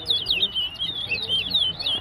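Caged towa-towa birds singing in a whistling contest: a fast, unbroken run of high chirping notes that slide up and down.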